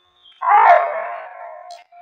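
A pit bull's single loud vocalization, starting a little way in and trailing off over about a second and a half.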